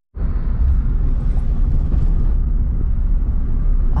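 Volkswagen Gol being driven, heard from inside the cabin: a steady low rumble of engine and road noise.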